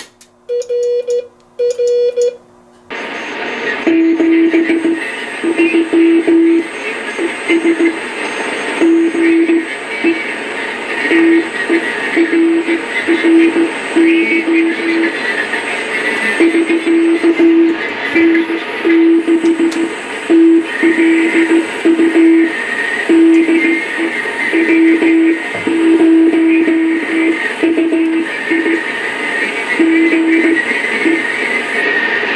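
Morse code (CW) from the National NC-173 shortwave receiver's speaker: a low steady beep keyed on and off in dots and dashes over a background of band hiss. During the first three seconds the hiss drops away and a few short, higher beeps sound.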